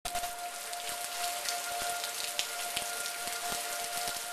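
Steady rain falling, with many sharp drops landing close by. Underneath is a distant tornado warning siren holding one steady tone that swells and fades slightly.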